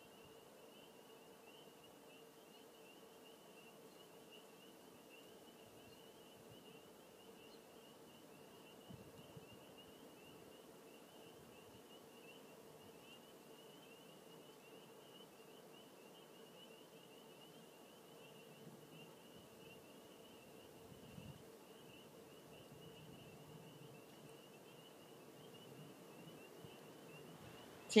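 Near silence: quiet room tone with a faint, steady high-pitched tone and a fainter lower hum.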